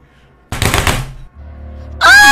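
A loud, rapid rattling burst lasting about three-quarters of a second, starting about half a second in, followed by a low steady hum.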